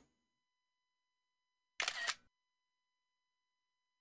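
Dead silence broken by one short burst of noise, about half a second long, roughly two seconds in.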